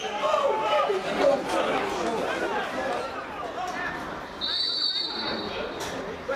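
Spectators and players chattering and calling out at a small football ground. Near the end a referee's whistle sounds once, a steady shrill tone held for about a second and a half, signalling the free kick to be taken.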